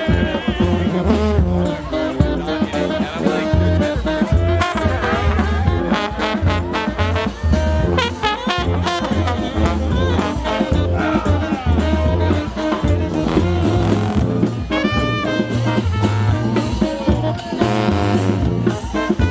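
New Orleans brass band playing up-tempo second-line jazz: sousaphones carry a pulsing bass line under trombones and trumpets, with drum hits.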